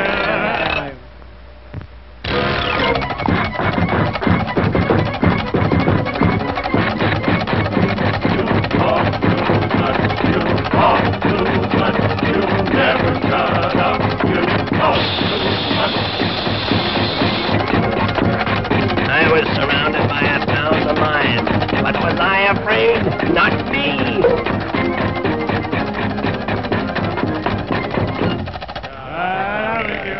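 Old cartoon soundtrack: an orchestral score running under a rapid, continuous rattling clatter of sound effects, after a brief quieter moment about a second in.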